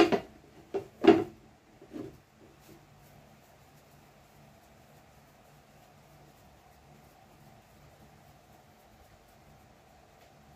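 A few sharp knocks and thumps in the first two seconds as hands work dumpling dough against a plastic bowl, the loudest about a second in. After that only a faint steady hum remains.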